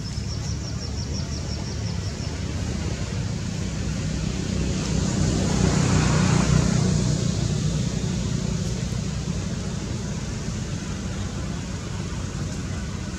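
A motor vehicle passing: a low rumble with a rushing noise that swells to a peak about halfway through and then fades. A high, rapid trill of chirps sounds in the first two seconds.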